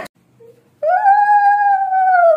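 A puppy whining: after a brief faint whimper, one long, high, drawn-out whine begins about a second in.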